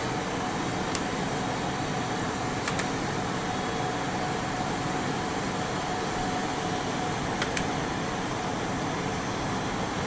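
Steady whir of a mechanical fan, with a faint steady high tone through most of it and a few faint clicks.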